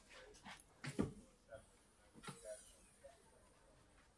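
A few sharp clicks and a knock, the loudest about a second in, as a car's engine lid is unlatched and lifted open; otherwise quiet.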